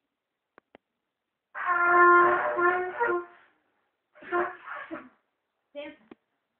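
A one-year-old blowing a trumpet: a long, wavering pitched blast, then a shorter one and a brief toot near the end.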